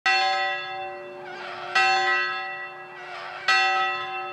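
A bell struck three times at even intervals, each stroke ringing on and fading before the next.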